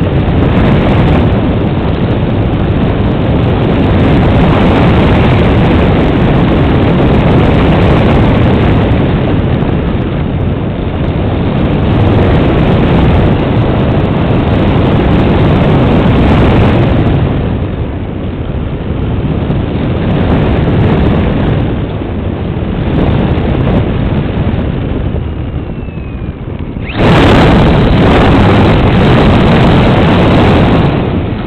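Airflow and propeller noise buffeting the onboard camera microphone of a Styroman Sbach 1000 EP electric RC model plane in flight, a loud steady rush. It dips twice, then jumps suddenly louder a few seconds before the end as the plane comes down low over the grass.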